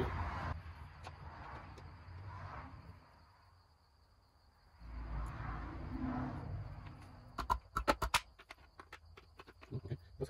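Oil pump being handled and fitted into the engine block: soft rustling handling, then a quick run of about eight sharp clicks a little past halfway as the pump is set in place.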